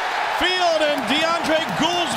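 A man's voice calling the play over a steady background of crowd noise.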